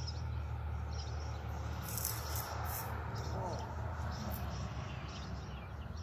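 Steady low hum of honeybees around an opened hive, with a few brief high chirps about two seconds in.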